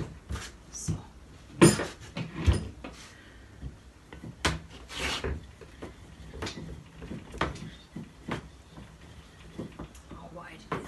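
A slab of clay being pressed by hand and rolled out with a wooden rolling pin on a wooden board between wooden guide sticks: irregular knocks and rubbing, the two loudest knocks about two seconds in.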